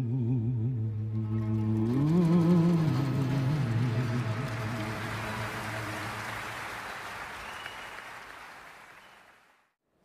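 A male singer holds a long final note with vibrato, stepping up in pitch about two seconds in and dying away. Audience applause swells under it, then fades out to silence near the end.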